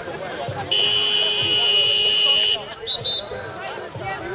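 An electronic buzzer sounds one steady, shrill tone for about two seconds, then two short high beeps, over the chatter of spectators.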